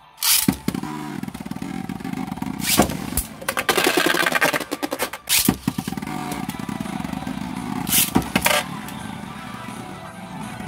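Two Beyblade spinning tops launched into a plastic stadium, then whirring and scraping across the stadium floor. Sharp clacks of the tops hitting each other come about three seconds in, at five and a half seconds, and twice around eight seconds, with a stretch of dense grinding between four and five seconds.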